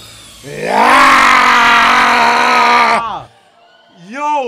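Baby dragon's shriek, a film sound effect: one long, loud, pitched cry of nearly three seconds that rises at the start, holds steady, then drops away as it ends.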